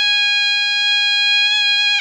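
Sronen, a Madurese double-reed shawm, holding one long, steady, piercing high note.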